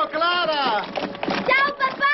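Voices calling out a farewell in long, drawn-out shouts, about three calls in a row, each rising and then falling in pitch.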